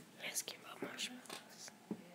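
A girl whispering softly in short breathy bursts, with a few faint clicks.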